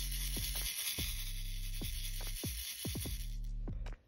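Hotfix rhinestones rattling and scraping in a small plastic triangle tray as it is shaken to flip them glue side down. Under it runs background music with steady low notes.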